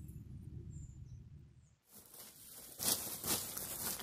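A low background rumble, then, about two seconds in, rustling and crinkling of a plastic sack of pine cones as a hand rummages in it and picks a cone out, loudest about three seconds in.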